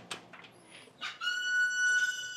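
A door's hinges squeaking as it opens: one steady high-pitched squeal lasting about a second and a half, starting about a second in.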